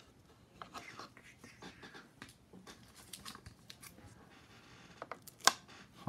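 Hands handling trading cards in plastic holders: faint scattered rustles and light clicks, then one sharp plastic click near the end as a graded card slab is set on a wooden display stand.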